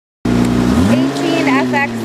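2002 Hyundai Santa Fe's 2.7-litre V6 running at idle under the open hood. Its speed rises a step just before a second in and holds there.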